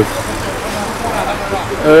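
Steady outdoor background noise, an even hiss and rumble with no distinct events, during a pause in speech. A man's voice starts an "uh" near the end.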